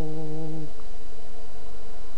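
A woman humming one long, steady low note that stops about two-thirds of a second in, after which a faint steady tone and a low hum carry on.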